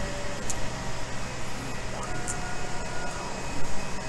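Steady machine hum of a running large-format FFF 3D printer and shop ventilation. Faint whining tones from the printer's stepper motors come and go in the second half as the print head moves. There are two faint, short high ticks.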